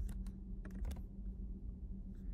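Computer keyboard keystrokes: a quick run of key clicks in the first second, then only a steady low hum.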